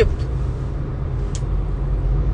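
Steady low rumble of a car heard from inside its cabin, the road and engine drone of the car under way.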